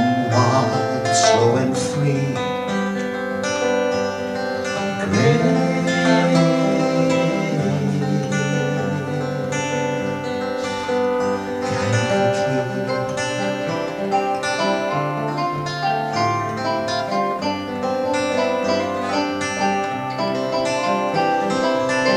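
Live acoustic folk music: an instrumental passage led by acoustic guitars playing steadily, with no lyrics sung.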